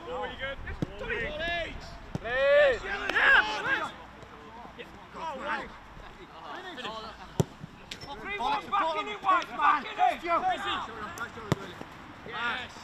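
Footballs being kicked on a grass pitch, a few sharp thuds, the clearest about seven seconds in, among players' short shouts and calls.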